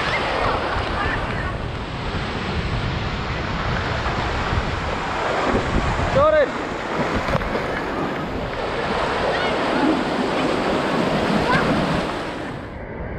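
Breaking whitewater surf washing around the camera, with wind buffeting the microphone. A child's brief shout rises and falls about six seconds in, and a few fainter voices come and go.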